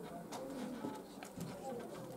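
Faint, low murmuring voices in a small room, with a few light clicks and rustles.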